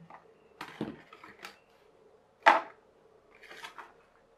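Foam glider lifted off and set down on a plastic kitchen scale: a few light rustles and taps, with one sharp knock about two and a half seconds in.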